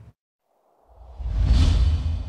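Whoosh sound effect of a TV news segment's logo sting, swelling up out of silence about a second in over a deep rumble.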